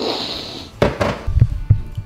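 Kitchen cabinets and drawers being handled: a brief hissing slide at the start, two sharp knocks about a fifth of a second apart, then a few dull thumps.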